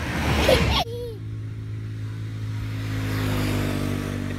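A passing road vehicle's engine hum that holds steady and slowly grows louder as it approaches, after a loud rushing noise that cuts off abruptly about a second in. A baby gives a short babbling sound near the start.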